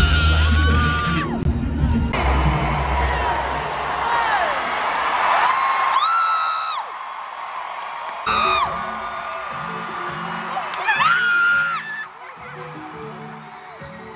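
Arena concert crowd screaming and cheering over loud music, with heavy bass in the first few seconds. Several high screams come close to the phone microphone, about six, eight and eleven seconds in. The sound changes abruptly several times where phone clips are cut together.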